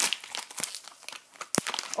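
Wrapper of a toy blind pack crinkling and tearing as it is opened by hand, with one sharp knock about one and a half seconds in.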